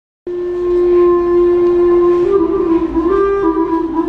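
A long wooden flute plays solo: it starts a quarter second in with one steady held note, then moves back and forth between two neighbouring notes in a slow melody.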